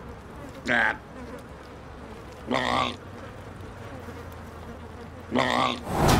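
Three short wordless vocal sounds from an animated character, each about half a second long, spaced a couple of seconds apart over a quiet background.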